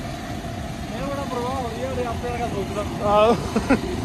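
Voices of riders talking over a steady low rumble of wind and road noise.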